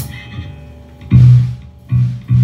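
Amplified low guitar note struck about halfway through, ringing and fading, then a second one struck right at the end; faint held tones ring quietly in between.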